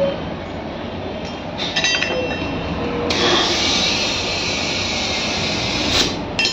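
Compressed air hissing steadily from a workshop air hose for about three seconds, used to inflate a rickshaw inner tube, then cutting off suddenly. Before it, near the two-second mark, come a few metallic clinks from tools on the floor.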